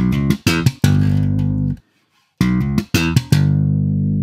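1966 Fender Jazz Bass played slap style: a quick run of short hammered, thumbed and popped notes that ends on a long held low G with vibrato. The phrase is played twice, the second time about two and a half seconds in.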